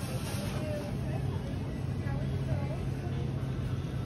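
Supermarket background noise: a steady low hum with faint, indistinct voices far off.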